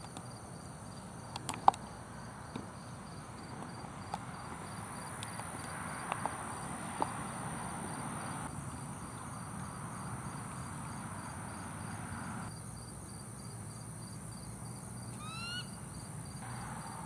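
Steady night insect chorus, a high continuous trill, with one sharp click about two seconds in. Near the end a short run of high chirps: a bald eagle's first call of the morning.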